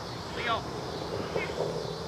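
Children's high-pitched shouts and calls across a playing field, with an adult calling a player's name. A steady low engine hum comes in near the end.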